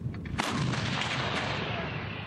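A 152 mm 2A36 Giatsint-B towed gun fires a single shot about half a second in. The report is followed by a long echoing tail that slowly fades.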